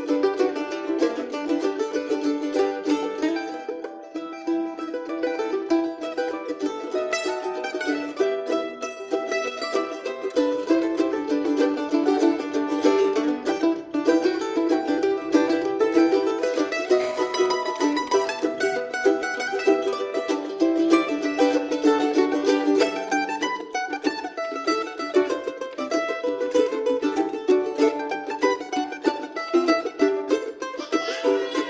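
Mandolins playing a fast traditional fiddle tune in a steady stream of rapidly picked notes.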